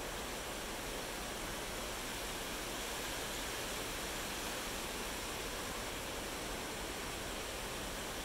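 Steady, even outdoor background noise, a plain hiss with no distinct events in it.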